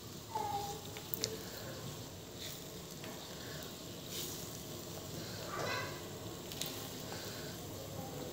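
Tofu pieces being dropped by hand into coconut-milk gulai sauce in an aluminium wok: soft splashes and a few small sharp clicks over a faint steady hiss.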